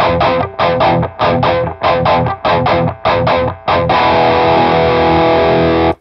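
Distorted electric guitar, an Ibanez, playing a quick run of short, choppy chord stabs, about four a second, then a held chord that rings for about two seconds and is cut off sharply just before the end. The tone is either his own amp rig or its Kemper Profiler capture.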